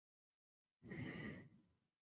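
One audible breath, like a sigh, close to the microphone, about a second in and lasting under a second, in otherwise near silence.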